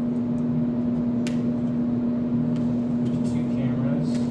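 A steady low machine hum, with a few light clicks and paper rustles from the returned cameras and bags being handled, one sharper click about a second in.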